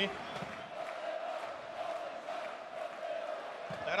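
Ice hockey arena crowd of home fans chanting together, a steady mass of voices.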